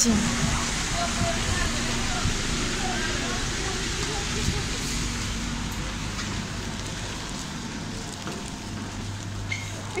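Steady background hubbub of a busy street and shop entrance: a continuous rushing noise with faint voices of passers-by and shoppers in the first few seconds, easing slightly as it moves indoors, where a low steady hum comes in near the end.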